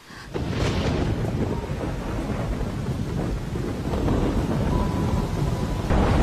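Thunder and heavy rain, coming in suddenly just after the start and continuing loud and steady, with a deep rumble underneath.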